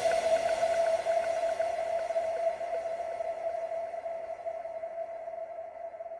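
Electronic dance music breakdown: the drums have dropped out and a single held synth tone rings on, slowly fading, with faint quick ticks above it that die away.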